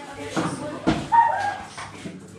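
A small dog whining once, a held high note about a second in that lasts under a second.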